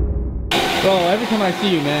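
A floor-cleaning machine running with a steady whir, starting about half a second in, just after the tail of a bass-heavy music track ends.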